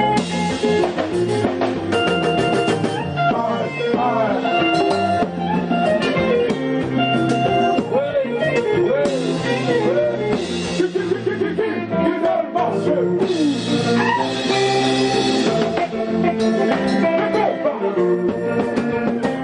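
Live band music: an electric guitar plays a lead line over a second guitar, drums and congas. In the middle the lead has bent, wavering notes.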